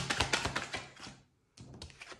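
Tarot cards being handled: a quick run of dry clicks and flicks as the cards slide and tap against the deck, stopping about a second in, then a few fainter taps as a card is set down on the table.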